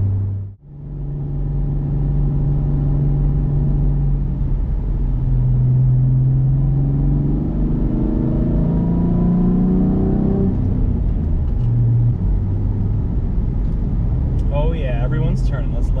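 2006 Ford Mustang's 4.0-litre V6, fitted with headers, a cold air intake and a Magnaflow exhaust, heard from inside the cabin while driving. After a brief dropout just at the start, it runs with a steady drone, then its pitch rises for about three seconds as the car accelerates and falls back about ten seconds in.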